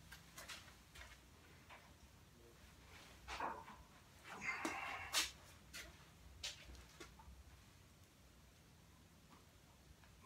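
Faint breaths of effort from a man pressing a barbell overhead: short forced exhalations, the longest about halfway through ending with a sharp click, and a few light clicks of the loaded bar.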